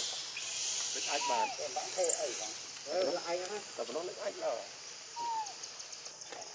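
Macaques calling: a run of short, wavering high squeals, then a single arched coo about five seconds in, over a steady high hiss.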